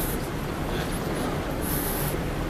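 Steady low rumble and hiss of a moving walkway running in a large airport concourse, with a brief high hiss near the end.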